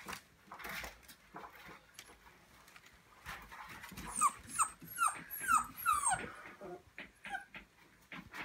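Young puppies squeaking: a quick run of about six short, high squeals, each sliding down in pitch, starting about halfway through, after a stretch of soft rustling and small knocks as they shift about in a wicker basket.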